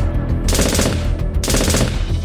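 Gunfire sound effect: two short bursts of rapid shots about a second apart, over background music with a steady low bass.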